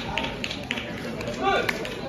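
Voices in a large sports hall: a brief call from a man about one and a half seconds in, over background chatter, with a few short sharp sounds in the first second.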